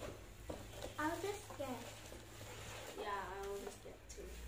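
Speech only: two short spoken phrases, about a second in and again near the end, with a faint low hum underneath.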